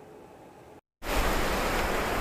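Lake Michigan waves washing on the shore, a steady rushing noise that starts abruptly about halfway through, after a moment of quiet.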